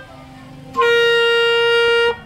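Clarinet sounding one long, steady held note that starts about three quarters of a second in, after a short quiet pause, and is held to the end.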